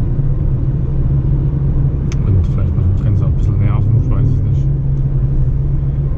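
Steady low road and engine rumble heard inside a Mitsubishi car's cabin while it drives at about 45 km/h.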